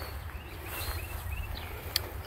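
A person walking through tall grass, with a low rumble of wind and handling on the microphone and a few faint bird chirps about a second in. One sharp click just before the end.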